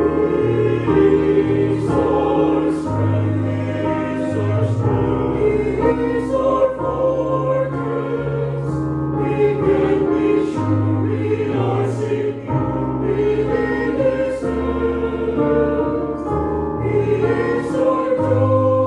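A church choir singing a gospel hymn in harmony, holding long notes on the lines "He is our strength" and "We can be sure".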